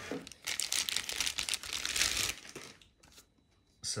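Clear plastic bag crinkling as a trail camera is pulled out of it: a couple of seconds of crackly rustling that stops well before the end.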